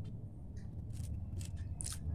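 Scissors snipping fresh coriander leaves into fine pieces: a series of short, crisp snips, roughly two a second.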